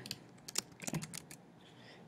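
A few quick keystrokes on a computer keyboard, typing a short word, between about half a second and a second and a half in.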